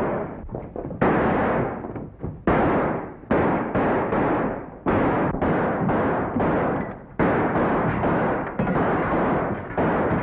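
A rapid, irregular series of gunshots, about one or two a second, each ringing and fading before the next.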